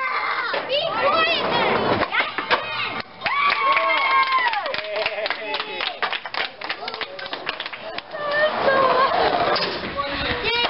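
A crowd of children calling out and shouting over one another, some calls drawn out and high, with scattered claps in the middle.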